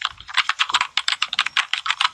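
Rapid typing on a computer keyboard, a quick run of keystroke clicks at about ten a second.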